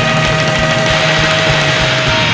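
Punk rock band playing a loud instrumental passage of heavily distorted guitars and drums, with one note held until just after the end.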